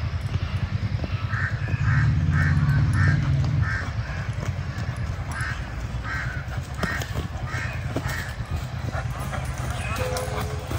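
A horse prancing, with a short sound repeating about twice a second in step with its gait.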